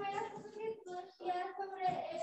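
A child's voice singing, holding steady notes in short phrases.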